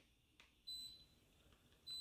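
A single short, faint electronic beep from a ductless mini-split indoor unit acknowledging a remote-control command as it is switched on, against near silence.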